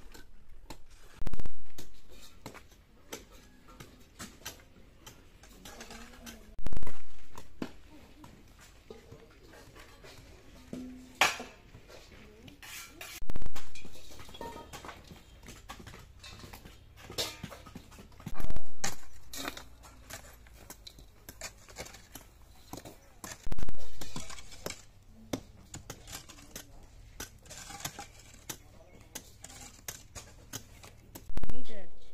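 Hand picks digging in an excavation trench: a dull, heavy thud every five or six seconds as the pick strikes the earth, with sharp clinks of metal tools, stones and pans in between.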